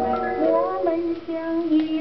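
A 1947 Pathé record playing on a turntable through a loudspeaker: a woman sings a Chinese popular song, holding notes with small glides between them.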